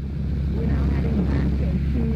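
Steady drone of a single-engine light aircraft's engine and propeller heard inside the cockpit, with a woman's voice talking over it from about half a second in.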